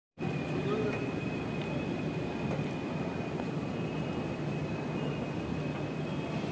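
Steady background din of a busy public space, with faint distant voices and a thin, steady high-pitched whine.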